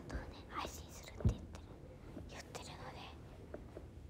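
A young woman whispering softly close to the microphone, with one short low thump about a second in.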